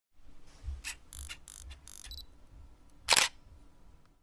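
Camera sound effect in an intro: a run of short mechanical clicks over the first two seconds, then one loud shutter click about three seconds in.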